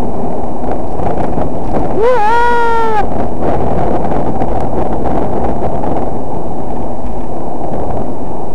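Car driving, its road and engine noise picked up loud and distorted by a cheap dashcam microphone. About two seconds in, a single high-pitched sound rises and holds for about a second.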